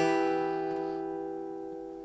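Acoustic guitar E minor bar chord, an A-minor shape barred at the seventh fret, ringing out after a single strum and fading slowly.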